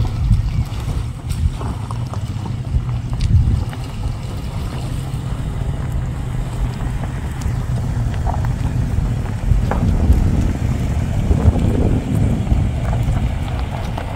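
Toyota Fortuner SUV driving slowly over a rocky riverbed: a low engine rumble with occasional clicks of stones under the tyres, mixed with wind buffeting the microphone. It grows louder about ten seconds in as the vehicle passes close.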